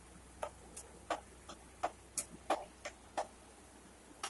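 Metal spoon tapping against the sides of a pressure cooker as rice and water are stirred: a run of light clicks, about two or three a second, slightly uneven.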